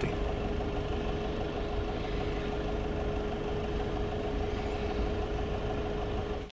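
Nissan Pathfinder's YD25 four-cylinder turbodiesel idling steadily at about 1000 rpm just after a warm start, heard from inside the cabin. A steady thin whine runs alongside it and cuts off near the end.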